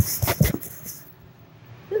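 Packaging being torn and pulled open: a quick run of sharp crinkling crackles in the first second, then quieter handling.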